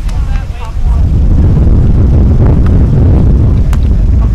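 Wind buffeting the microphone: a loud, low rumble that swells about a second in and then holds. Faint voices can be heard at the start, and there is a single sharp click near the end.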